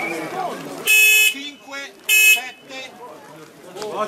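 Two short horn blasts about a second apart, each lasting about a third of a second, loud and buzzy on one steady pitch.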